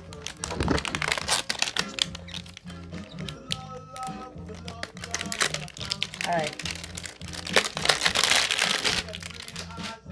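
Cardboard hanger box and its paper insert being handled and opened: paper and card crinkling in a dense run of sharp crackles, heaviest about three-quarters of the way through, over steady background music.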